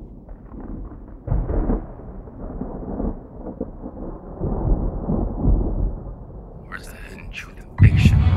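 Thunder rumbling in several rolls that swell and die away, dull with no high end.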